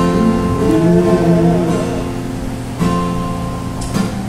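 Acoustic guitar playing the instrumental intro to a song: chords ringing over a moving bass line, with a fresh chord strummed near three seconds in.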